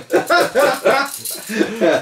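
Two men laughing heartily in quick repeated bursts, one higher-pitched voice first and a lower one joining near the end.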